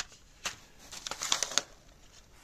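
Seed packets rustling and crinkling as they are picked up and shuffled by hand: a brief rustle, then a quick cluster of crinkles in the second half.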